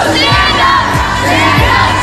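A group of cheerleaders shouting and cheering together, loud and excited, with music playing underneath.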